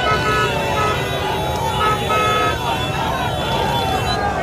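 A large crowd of people shouting and calling over one another, with a vehicle horn sounding in several short toots, the last one a little longer, a couple of seconds in.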